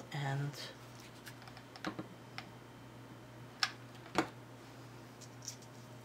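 A few small sharp clicks and taps, the loudest two about three and a half and four seconds in, from hands handling lace and craft materials on a tabletop.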